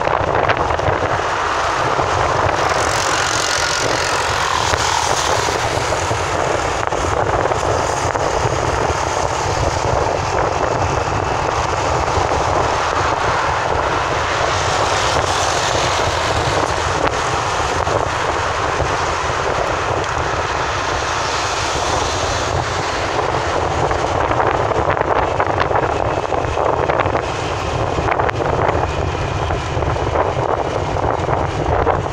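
Steady road and wind noise of a car driving at speed, heard from inside the cabin.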